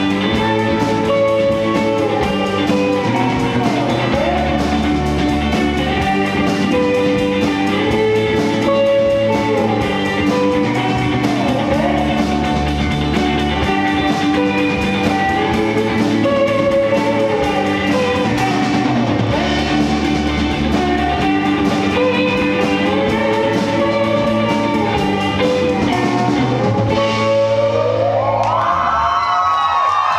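Live indie rock band playing an instrumental passage: electric guitars over bass and drum kit at a steady, loud level. Near the end a pitch sweeps upward.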